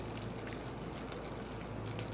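Steady background ambience: a low hum under an even hiss with a thin high whine, and a few faint short high ticks.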